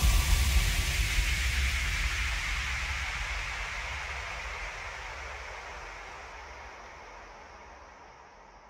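The closing tail of a Melbourne bounce electronic dance track: a hissing noise wash over a deep bass rumble, left ringing after the final hit and fading out steadily, its highest hiss cutting away near the end.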